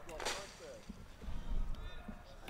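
Faint, indistinct voices with a low rumble underneath.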